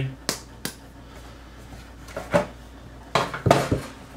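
A wooden strop bat knocking as it is lifted off a plastic kitchen scale and set down on a wooden cutting board: a few sharp scattered clicks, then a quick cluster of knocks near the end as it is laid down.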